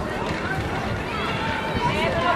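Many young children's voices chattering and calling out at once, high and overlapping, over steady outdoor street noise.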